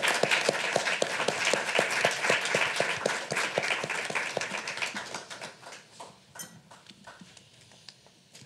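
Audience applauding, fading away over the second half and thinning to scattered claps.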